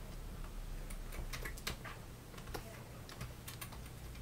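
Computer keyboard keys pressed in a scattered, irregular series of light clicks, over a faint steady low hum.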